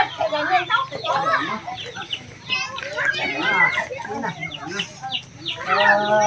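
Chickens clucking among the voices of people and children talking.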